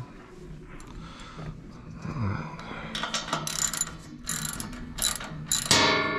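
Socket ratchet wrench clicking in quick runs as it turns the U-bolt nuts on a Brunswick pinsetter's pinwheel mount, with a louder metallic ring near the end.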